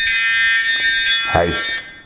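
Electronic timer alarm sounding as the set time runs out: one steady, loud, high buzzing tone that cuts off near the end.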